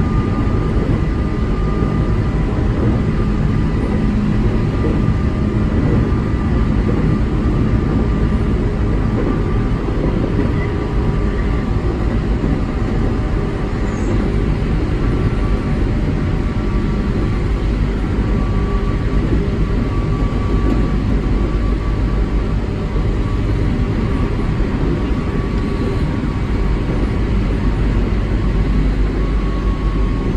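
Electric commuter train running steadily on the track, heard from inside the driver's cab: a continuous, even rumble of wheels and running gear, with faint steady high tones over it.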